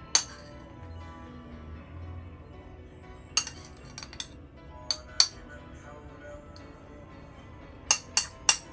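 Sharp clinks of tableware knocking together: one just after the start, a cluster of several between about three and a half and five seconds in, and another near the end, all over soft background music.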